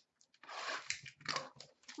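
Rustling and crinkling of trading cards and their packaging being handled, in two or three short bursts.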